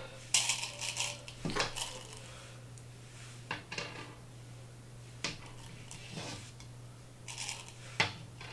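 Plastic Go stones clicking down one by one on a wooden Go board: several separate sharp clicks spread out, with short rattles as stones are picked from the bowls.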